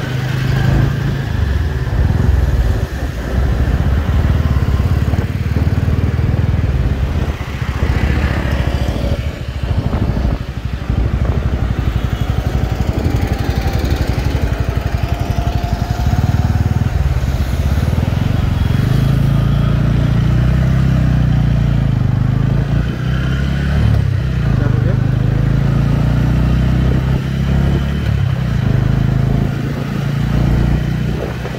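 Motorcycle engine running at low speed and idling in traffic, a steady low engine note.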